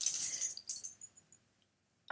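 Metal tags on a small dog's collar jingling briefly as the dog moves about. The jingle lasts under a second, then stops.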